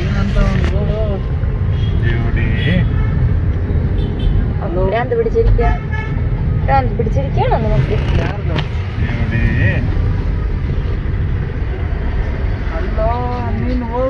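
Steady low road rumble inside a car in traffic, with short car-horn toots from the street outside and a few brief voices.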